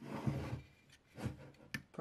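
Wooden drying rack being handled and turned over: a soft knock about a second in and a sharp click of wood or its magnetic parts near the end.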